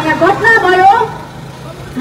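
A woman speaking loudly into a handheld microphone. Her voice breaks off a little past one second in, leaving a steady low hum underneath.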